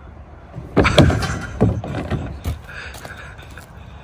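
Skateboard clattering down a hard plastic playground slide: a run of loud knocks and rattles starting about a second in and lasting about two seconds, loudest at the start.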